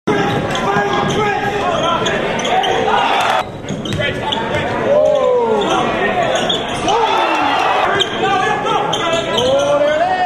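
Basketball game in a gym: the ball bouncing on the hardwood court under the steady calling and shouting of many voices from the crowd and players.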